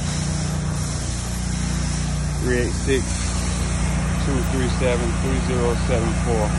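Pressure-washing rig's engine running steadily, a constant low hum with a steady hiss above it.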